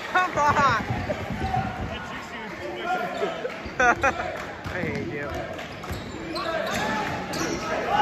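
A basketball dribbled on a hardwood gym floor during play, bouncing repeatedly, with spectators' voices around it.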